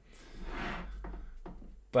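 A soft, drawn-out rubbing sound, swelling and fading over about a second and a half, over a faint low hum.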